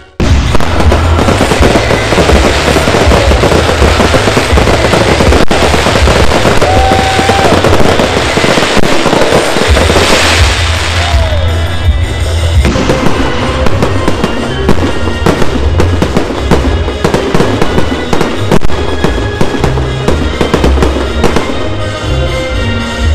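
Fireworks bursting in quick succession, a dense run of bangs and crackling, over music with a heavy pulsing bass.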